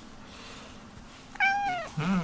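Domestic cat meowing once, a short high call about one and a half seconds in that drops in pitch at its end.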